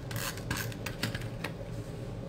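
Paper and card stock being rubbed and pressed by hand on a tabletop, a run of short scratchy rasps in the first second and a half, quieter afterwards.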